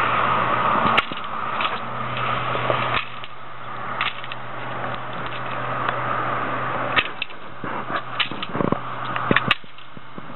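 Steady road-traffic noise with a low hum, swelling and easing as vehicles pass, overlaid by scattered sharp clicks from a long-handled pole pruner snipping thin crepe myrtle shoots, several of them close together near the end.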